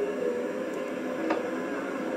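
Steady hiss of an old videotape recording, with faint indistinct background sound and a single click just over a second in.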